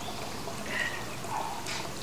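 Steady hissing background noise, with a few faint short sounds near the middle and toward the end.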